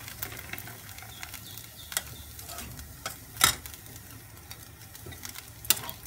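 A spatula stirring thick rice-flour dough in a steel kadai as the batter cooks down into dough, scraping along the pan with a few sharp knocks against the metal, the loudest about three and a half seconds in.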